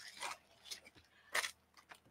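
A few short, faint clicks and crackles, the loudest about halfway through, over quiet room tone: small handling and mouth noises near the microphone.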